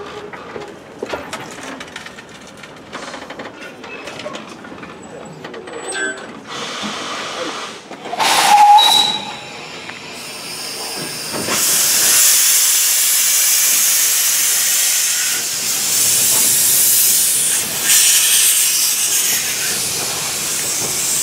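Steam locomotive venting steam. A loud hissing burst comes about eight seconds in, then a strong steady hiss of escaping steam from about twelve seconds on.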